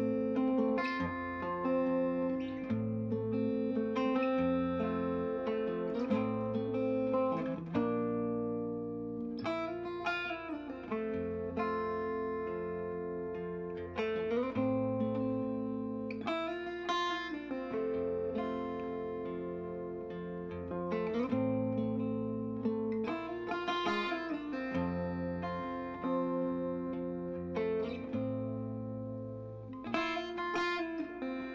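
Solo archtop guitar played fingerstyle in an instrumental passage: repeated low bass notes under a picked melody, with a few notes slid in pitch.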